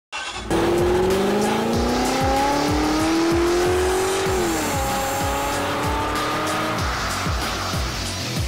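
Intro sound effects of a car engine revving, its pitch climbing steadily for about four seconds and then falling quickly before holding level, with screeching tyres from a burnout, over music with a steady drum beat.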